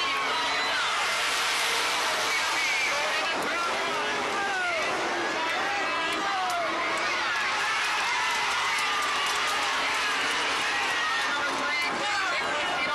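Winged dirt-track sprint car engines running hard, their pitch rising and falling as the cars pass, under steady crowd noise with shouting voices.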